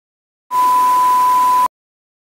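A single steady high-pitched beep with a hiss beneath it, a bleep sound effect lasting just over a second. It starts about half a second in and cuts off abruptly.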